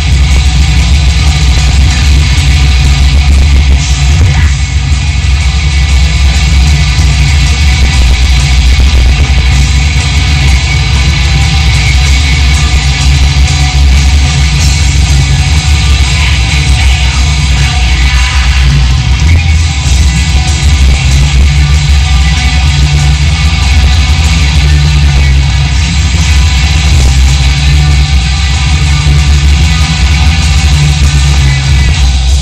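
Black metal band playing live: distorted electric guitars, bass and drums in one loud, unbroken wall of sound.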